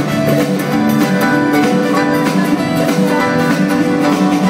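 Live band playing an instrumental passage on piano, electric guitar and drums, with regular drum hits and no singing.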